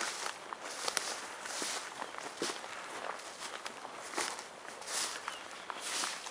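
Footsteps of a person walking over rough outdoor ground at a steady pace, about one step every second or a little less.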